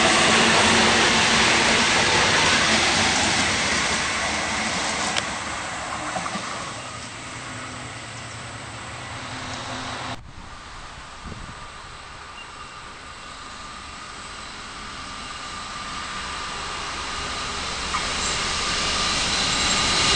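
An electric passenger train running past and pulling away, its rumble and hiss slowly fading. After an abrupt cut about halfway through, a diesel freight locomotive approaches from a distance, growing steadily louder toward the end.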